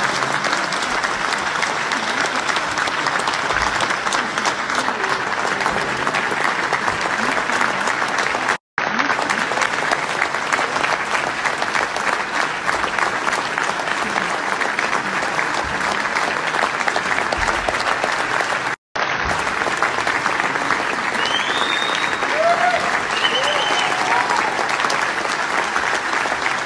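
A large theatre audience giving a standing ovation: dense, steady applause from hundreds of hands in a big hall. It breaks off for an instant twice, and a few brief calls rise above it near the end.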